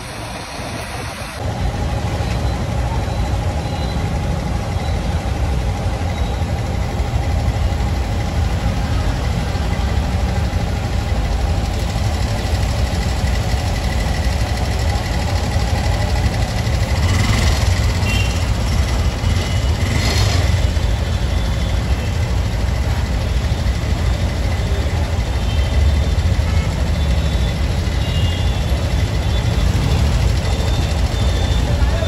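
Motorcycle engine running at low speed, a steady low rumble, with surrounding street traffic.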